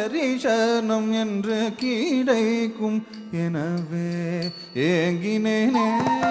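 Carnatic music accompanying a classical dance: a single melodic line, most likely a voice, holding long notes and bending between them in ornamented slides, with brief breaks about three seconds in and again near five seconds.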